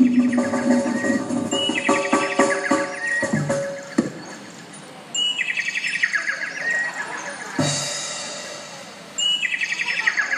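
Bird-like chirping call, a rapid trill falling in pitch, heard three times about three and a half seconds apart, over held musical tones that die away in the first few seconds.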